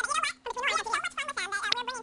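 A weather presenter's voice fast-forwarded to many times normal speed, turned into rapid, high-pitched, garbled chatter.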